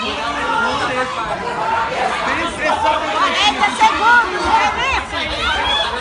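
Spectators' overlapping voices, chattering and calling out, with a run of high-pitched shouts through the middle.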